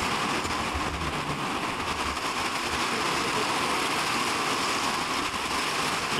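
Heavy rain falling steadily on the translucent roof panels of a covered patio.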